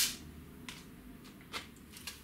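A few faint, brief clicks as carbon feeder-rod quivertips are handled, over quiet room tone.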